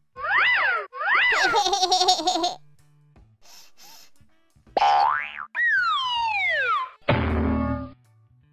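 Cartoon sound effects: two springy boings with swooping pitch, then a quick rising whistle and a long falling slide-whistle glide, ending in a short noisy crash about seven seconds in as a character collapses in a comic faint.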